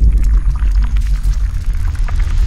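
Deep, loud rumble sound effect that has swelled up and holds steady, with faint crackling above it, accompanying an animated transition.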